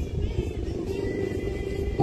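Protest crowd murmuring and calling faintly between chants, over a low rumble.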